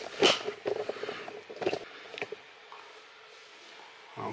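Camera handling noise: a few brief rustles and knocks in the first couple of seconds as the camera is moved and set down, then only faint steady room noise.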